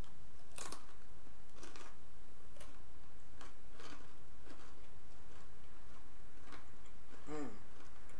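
Close-miked chewing of crunchy food, a short crackle roughly every second. It ends with a brief hummed "mmm" near the end.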